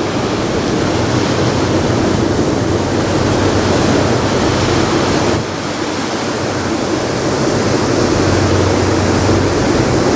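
Steady rushing noise of wind and water on the deck of a moving car ferry, with a low engine hum underneath. The level dips briefly about five seconds in.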